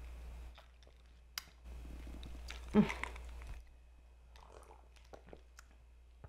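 A person sipping and swallowing an iced drink from a glass, with a single sharp clink of ice against the glass about a second and a half in. Then comes an appreciative "mm" and small lip smacks as she tastes it.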